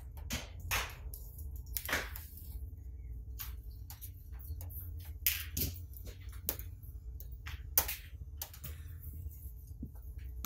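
Scattered sharp clicks and taps from a wrench and wiring being handled at a truck battery terminal, over a steady low hum.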